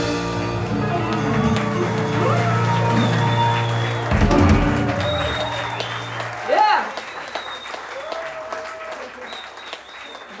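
A live band's final held chord, with electric guitars, bass, keyboards and cymbals ringing and one last drum hit about four seconds in, dying away after about five seconds. Audience applause runs under it and carries on after the band stops, with a voice calling out in a rising cheer and then voices over the clapping.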